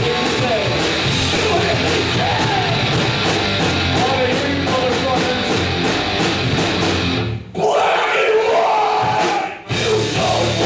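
Hardcore punk band playing live and loud: distorted guitars, bass, drums with steady cymbal hits, and a shouted lead vocal. About seven and a half seconds in, the band drops out for roughly two seconds, leaving the shouting voice on its own. The full band crashes back in right at the end.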